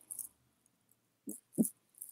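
Mostly quiet room tone in a gap between words, broken by two short, faint vocal sounds about a third of a second apart near the end.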